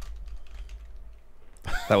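Light typing on a computer keyboard: scattered soft key clicks over a low steady hum.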